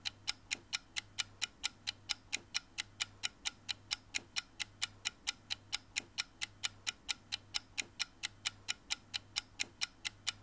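Rapid, even clock ticking, about four to five ticks a second, over a low steady hum.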